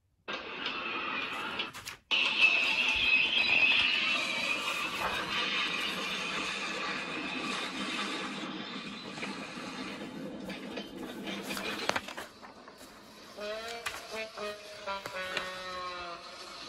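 Water-splashing sound effect: a rush of splashing noise that starts strongly about two seconds in and slowly fades away. Near the end a few held musical tones come in.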